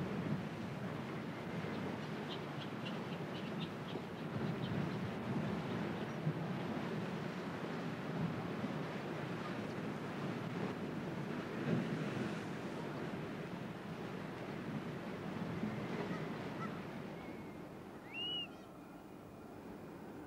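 Surf washing and breaking against sea cliffs in a steady roar of waves. Seabird calls sound over it: a quick run of short repeated calls a few seconds in and a single rising-and-falling call near the end.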